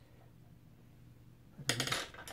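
Faint room tone, then about 1.7 s in a brief metallic clatter and clink as a metal watercolour paint box with its loose paint pans is shifted on the table.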